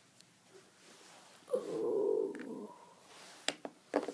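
A person's growl, rough and about a second long, starting about a second and a half in. Then a couple of sharp knocks of a plastic action figure on a wooden floor near the end.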